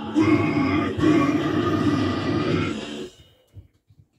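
A harsh, growled metal scream sung into a handheld microphone, held in two long stretches and cut off about three seconds in. A few faint knocks follow.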